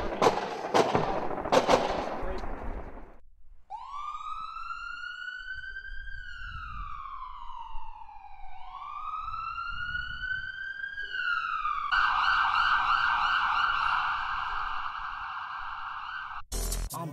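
A siren wailing, its pitch rising and falling slowly twice, then switching to a fast warbling yelp about twelve seconds in. It is preceded by about three seconds of noisy crackle with sharp bangs.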